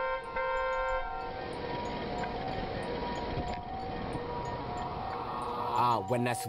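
Street traffic noise with a vehicle horn sounding for about the first second, then a steady hum over the traffic for the rest.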